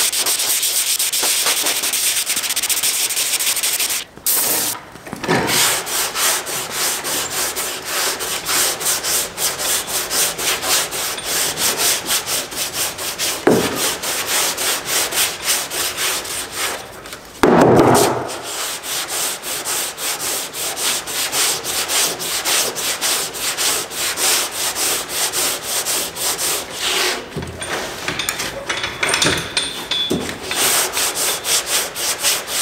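Hand block sanding of a car trunk lid's primer surfacer with 220-grit paper on a sanding block: a steady scrape of long strokes at first, then quick back-and-forth strokes about three a second. Two brief louder knocks break in about halfway.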